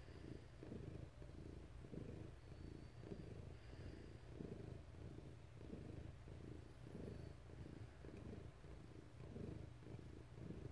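A house cat purring close to the microphone: a faint, steady low rumble that pulses about twice a second.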